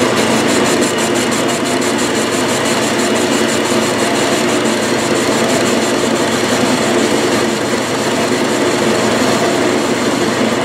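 Metal lathe running under power while a cutting tool faces and chamfers the end of a steel flywheel blank: a steady mechanical drone, with a fast, regular ticking over the first few seconds.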